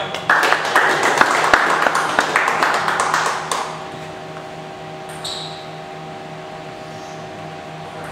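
Spectators clapping for about three seconds after a table tennis point, over a steady hum from the hall. A little past halfway, one short ping of a celluloid table tennis ball bouncing.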